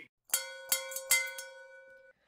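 Ship's crow's-nest warning bell struck four times in quick succession, its ringing tone hanging on and slowly fading after the last strike: the lookout's alarm that an iceberg lies ahead.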